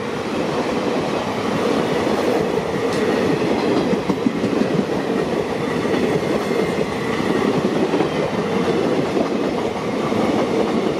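Blue Indian Railways passenger coaches of an express running past at speed: a steady, loud rumble of steel wheels on rail, with the clickety-clack of the wheels over the rail joints.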